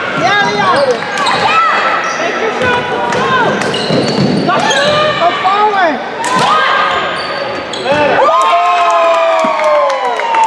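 Basketball being played in a gym: sneakers squeaking on the hardwood in short, sliding chirps, the ball bouncing, and players and spectators calling out. A longer sliding tone starts about eight seconds in.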